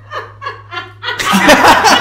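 A man laughing: a run of short, soft chuckles, about four a second, that breaks into loud, open laughter about a second in.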